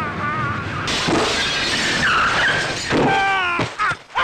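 Dubbed action-film fight sound effects: a sudden crash about a second in, wavering squealing tones, and a falling-pitch squeal about three seconds in. The sound cuts off sharply just before the end.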